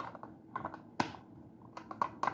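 Pliers working a brass nut on the bolt through a ceiling fan's downrod clamp, metal on metal: short clusters of light clicks, with one sharp click about halfway through.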